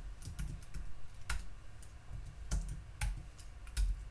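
Typing on a computer keyboard: irregularly spaced keystrokes with a few sharper clicks, as a line of Java code is entered.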